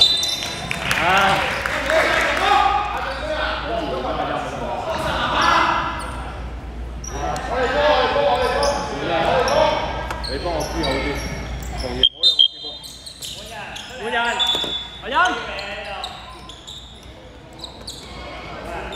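Basketball game in an echoing gym hall: the ball bouncing on the hardwood court, with players' and coaches' voices calling out across the court. Two sharp loud bangs come about two thirds of the way through.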